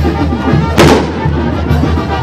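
Brass band music with drum and low bass notes, and a single sharp, loud bang about a second in.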